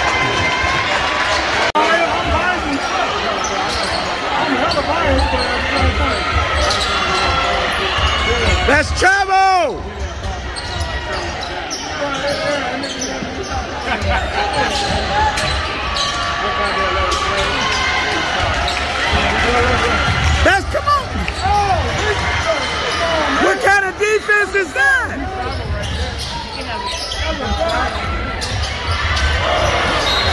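Basketball game in a gym: a ball bouncing on the hardwood court and sneakers squeaking in short bursts three times, over steady crowd chatter.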